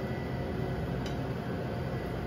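Steady background noise at a restaurant kitchen stove, with one faint click about halfway through.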